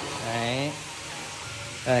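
A man speaking Vietnamese: a drawn-out word trailing off, about a second of faint room hiss, then one short spoken word near the end.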